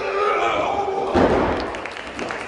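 A loud slam of a body hitting the wrestling ring's canvas a little over a second in, after a sustained shout.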